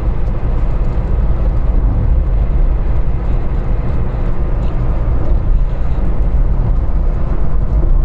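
Steady low rumble of a car driving on the road, heard from inside the cabin: engine and tyre noise with no breaks.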